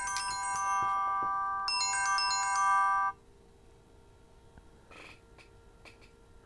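Mobile phone ringtone: a bright chiming melody played in two phrases, which cuts off abruptly about three seconds in.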